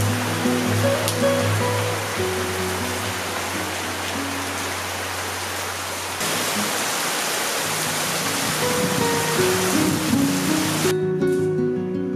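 Heavy rain falling on a bamboo grove, a steady hiss under background music. The rain gets louder about six seconds in and cuts off abruptly near the end, leaving only the music.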